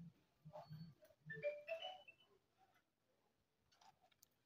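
Near silence: room tone, with a few faint, brief tones in the first two seconds.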